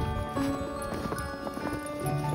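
Footsteps in boots crunching through deep snow, under gentle background music with held notes.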